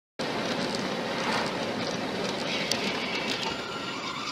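Steady road, tyre and wind noise inside a car moving at highway speed, as picked up by a dashcam.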